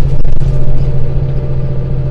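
Semi-truck's diesel engine droning steadily with road noise, heard inside the cab while driving on the highway.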